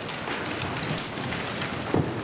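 A congregation getting to its feet: a dense, even rustle and shuffle of clothing, seats and feet, full of small clicks and creaks, with one sharper knock near the end.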